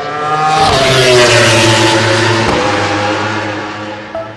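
Engine pass-by sound effect: a vehicle engine builds up, goes by with its pitch dropping about a second in, and fades away.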